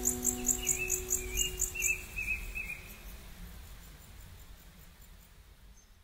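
Crickets chirping in a fast, even pulse, with a brief warbling bird call in the first half, over fading held notes of new-age music; everything fades out toward the end.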